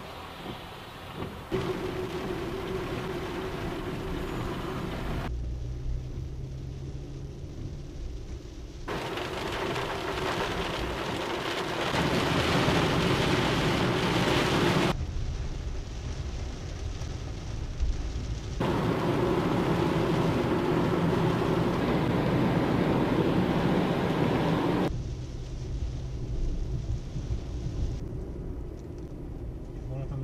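Car driving through a rainstorm, heard from inside: steady tyre and road noise on a wet road with rain on the car. The sound changes abruptly every few seconds where clips are cut together, and is louder in the middle.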